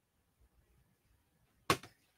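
Faint rustling of paper prints being handled, then one short, sharp swish of a print sheet being moved or laid down about a second and a half in.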